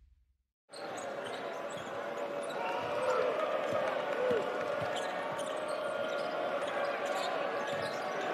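Live basketball arena sound: a basketball being dribbled on the hardwood court over a steady crowd murmur. It starts about a second in, after a moment of silence.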